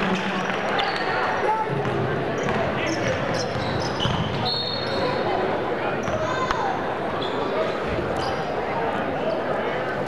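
Live basketball game on a hardwood gym floor: the ball bouncing as it is dribbled and players' shoes squeaking in short high chirps, over a steady background of crowd voices echoing in the gym.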